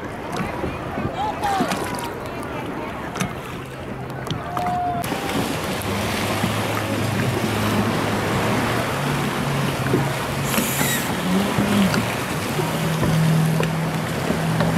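A jet ski's engine running on open sea water as the craft passes close by, with a rush of water and wind. The engine tone holds steady and shifts pitch a few times, with a brief rise and fall of revs about three-quarters of the way through.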